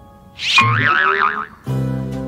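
A comic wobbling 'boing' sound effect, its pitch warbling rapidly up and down for about a second, then light background music with steady plucked notes comes back in.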